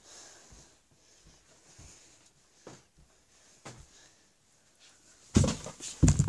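Quiet rustling and a few soft knocks, then a loud scuffling burst near the end.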